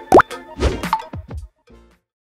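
Animated logo intro sting: a short upward pitch slide near the start, then a few quick cartoon-style sound effects over music. It ends about a second and a half in.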